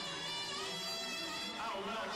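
Live funk band playing, with a man's vocal over electric bass, electric guitar and drums.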